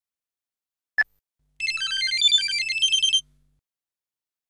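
A single mobile phone keypad beep, then a short electronic ringtone melody of quick high notes that runs for about a second and a half and cuts off.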